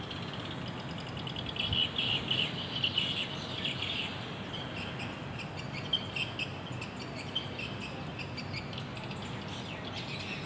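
Birds chirping: many short high notes in quick runs, busiest in the first few seconds, over a steady low background hum.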